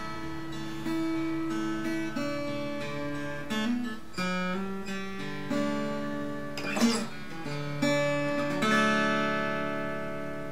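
Acoustic guitar in open D tuning, slowly fingerpicked: single notes and open strings ring and overlap, the notes changing about once a second with no set rhythm. Near the end the last notes are left to ring and fade.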